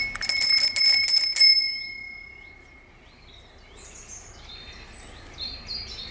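Chrome dome bicycle bell on a folding bike's handlebar, rung with its thumb lever in a quick run of strikes for about a second and a half, its bright ring then dying away over the next second.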